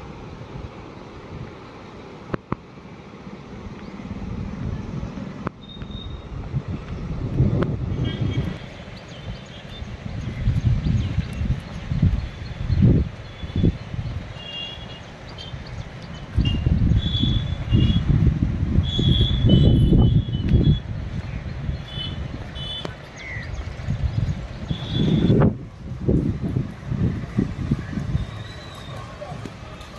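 Wind buffeting the microphone in irregular low gusts that come and go. A scatter of short, high-pitched tones runs through the middle.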